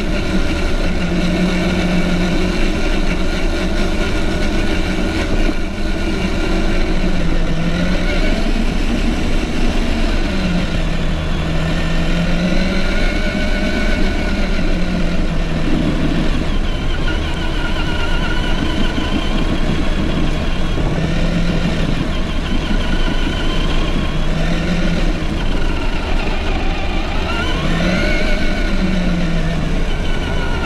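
Traxxas TRX-4 Defender RC crawler's electric motor and geared drivetrain whining, the pitch rising and falling again and again with the throttle, with a steep rise near the end. Under it runs a steady low rumble of the tyres on dirt and gravel, heard close up from a camera mounted on the truck.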